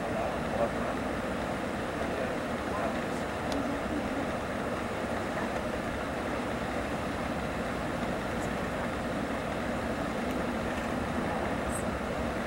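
Steady running noise of a Mercedes-Benz O-500RSDD double-decker coach at highway cruising speed, heard from inside the cabin: a continuous mix of tyre and road rumble with engine and drivetrain hum.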